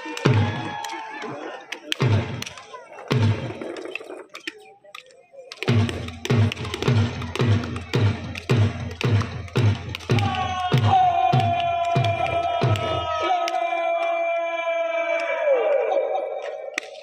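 Deep, evenly spaced thumps of a border-ceremony march: a few scattered ones, then about two a second for several seconds. From about ten seconds in, a single long held note sounds over them and dips slightly near the end.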